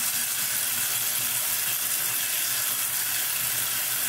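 Bathroom sink tap running in a steady stream while face-washing water splashes into the basin.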